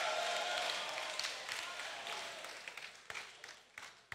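Congregation laughing and applauding. The noise fades steadily over about three seconds, leaving a few scattered claps before it dies out near the end.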